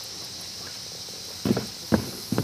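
Steady high-pitched insect chorus, with two dull thumps about half a second apart near the end: a person's footsteps as he climbs out of the trike's seat onto the grass.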